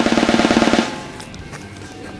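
A fast drum roll that grows louder and stops abruptly less than a second in, leaving only faint background sound.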